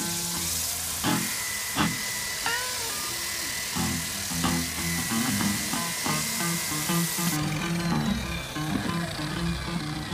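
An electric rotary sander-polisher running against a paulownia wood board: a steady high sanding hiss with a thin motor whine, cutting off suddenly about seven seconds in. Background music with plucked notes plays under it and carries on after the sander stops.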